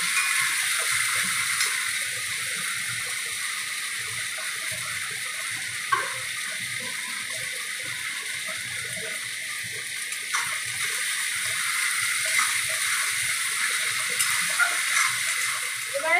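Sliced onions sizzling steadily in hot oil in a steel wok, with a couple of sharp clicks of the metal spatula against the pan partway through.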